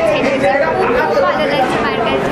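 Speech only: a woman talking, with other voices chattering in the background.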